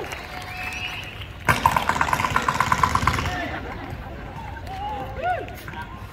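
Performers' voices carried over a stage sound system, with a sudden rapid rattling pulse of about eight beats a second that starts about a second and a half in and lasts nearly two seconds.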